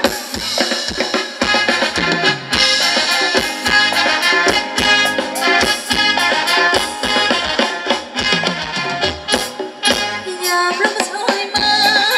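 Thai ramwong dance music played by a live band, with a drum kit keeping a busy beat under sustained melody instruments.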